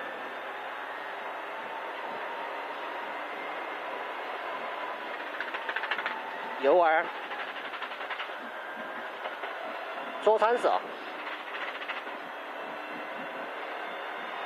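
Rally car at speed on a hill climb, heard from inside its stripped, roll-caged cabin: a steady drone of engine and road noise, with two short voice calls of pace notes cutting through it.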